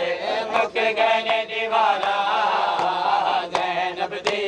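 A group of men chanting a Punjabi noha, a mourning lament, in unison. Sharp hand strikes on chests (matam) land about once a second.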